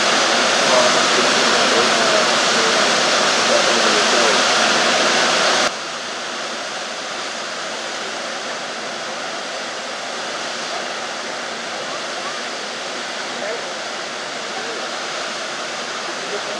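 Fall Creek Falls, a tall waterfall, giving a loud, steady rush of water plunging into its pool. About six seconds in, the rush drops sharply to a quieter, steady roar of the falls heard from farther off.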